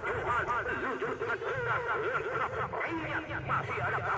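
Crowd of football spectators chattering, shouting and laughing, many voices overlapping without pause.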